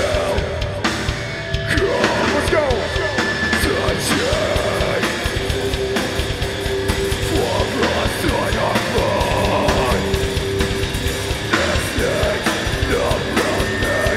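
Heavy hardcore band playing live: electric guitars and drum kit, with a vocalist yelling over the music in stretches.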